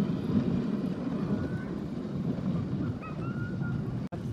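Dog sled gliding over a packed-snow trail behind a running husky team: a steady rushing noise from the sled and wind on the microphone.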